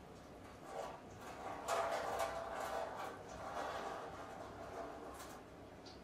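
Hot water poured from the spout of a small Yixing clay teapot, splashing and trickling onto a wooden tea tray. It is loudest from about two to four and a half seconds in, then thins to a few drips. This is the water that warmed the pot being emptied out.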